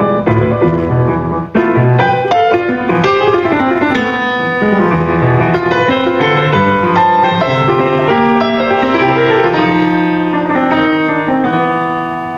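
Steinway & Sons grand piano played by hand: many quick notes over held bass notes, with a brief drop in loudness about a second and a half in before the playing picks up again.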